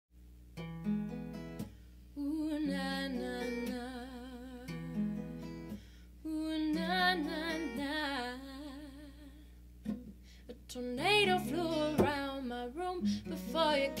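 Fender cutaway acoustic guitar playing a slow picked intro in short phrases, with a wordless sung melody with vibrato over it.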